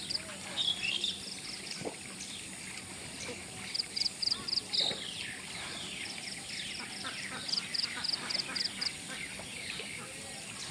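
Birds calling: runs of four to six short high notes, repeated again and again.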